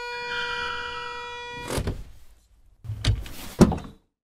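Car sound effects: a steady pitched tone held for about two seconds, then a knock, and near the end a noisy stretch with two heavy thuds.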